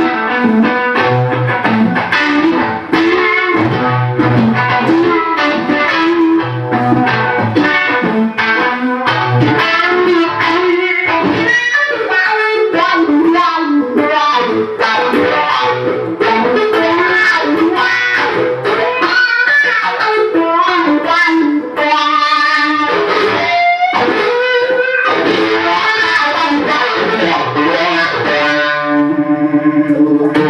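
Electric guitar, a Fender Stratocaster, played through a fuzz, wah and Gypsy-Vibe (Uni-Vibe-style) pedal chain into an amplifier: a continuous stream of picked lead notes and phrases. Near the end a held note throbs quickly.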